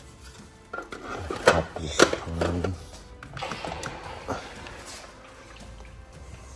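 Hard plastic clicks and knocks as an aquarium's hang-on-back filter and its parts are handled, with two sharp knocks about a second and a half and two seconds in. Background music runs underneath.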